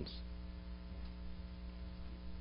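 Steady, low electrical mains hum, a constant buzz with no change in pitch or level.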